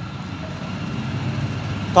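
Steady background road-traffic noise, growing slightly louder toward the end.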